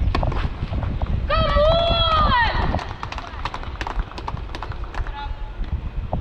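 Tennis play on a clay court: scattered sharp clicks and scuffs of ball strikes and running footsteps. About a second in, a player gives one long, loud shout that bends in pitch, as the point ends.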